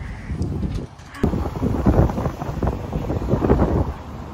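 Wind buffeting the microphone in irregular gusts, a loud rumble that starts suddenly about a second in.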